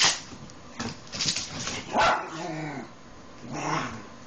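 Rat terriers barking and yipping in play: a sharp bark at the start, a quick cluster about a second in, the loudest bark at about two seconds trailing off into a falling cry, and another bark near the end.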